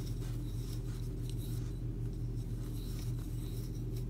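Soft, irregular rustling and light scraping of acrylic yarn drawn through loops on a 6 mm wooden crochet hook as chain stitches are worked, over a steady low hum.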